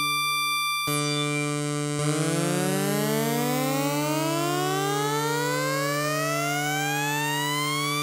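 Arturia Prophet-5 V software synthesizer holding a steady low, bright note. From about two seconds in, a second note slides smoothly and steadily upward with glide (portamento) for about six seconds, climbing some three octaves like a slow siren.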